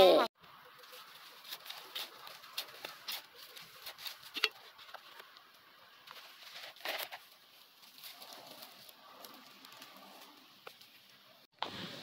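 Faint rustling and scratching of gloved hands working loose soil and dry straw mulch while planting watermelon seedlings, with scattered small clicks and a few louder scrapes about four and seven seconds in.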